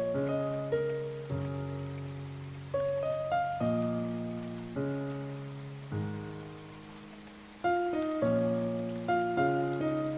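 Solo piano playing slow chords and a melody, each chord struck every second or two and left to ring and fade, over a steady patter of rain.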